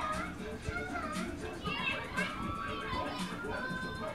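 Children's voices over music with a regular beat.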